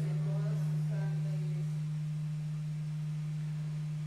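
A steady low-pitched hum, one unchanging tone, with faint voices in the background that fade out about a second and a half in.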